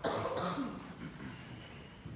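A person coughing: a sudden loud cough right at the start, with a second weaker one about half a second later, fading out within a second.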